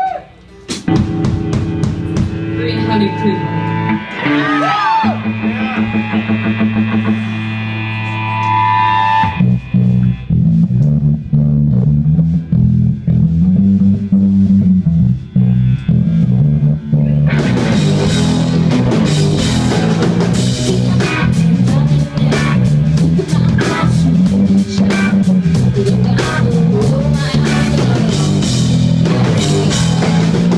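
Live rock band playing an instrumental. A lone electric guitar opens with a few sustained and bending notes. A low repeating riff comes in about nine seconds in, and drums and the full band join with a steady beat about eighteen seconds in.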